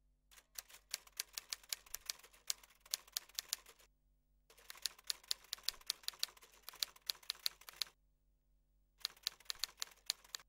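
Typewriter keys clacking in quick runs of strikes: two runs of about three and a half seconds with a short pause between, then a shorter run near the end, over a faint steady hum.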